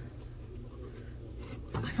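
Lid of a decoupage-covered pasteboard box rubbing and scraping as it is lifted off, over a steady low background hum.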